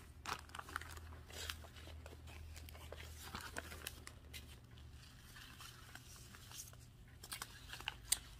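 Faint rustling and crinkling of plastic zip-top bags and paper seed packets handled by hand, with scattered soft clicks and taps as packets are shuffled.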